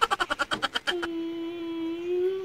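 A young child humming: a quick run of rapid short vocal pulses, then a steady hum on one note that starts about a second in.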